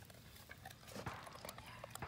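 Quiet, with a few faint soft clicks and rustles scattered through.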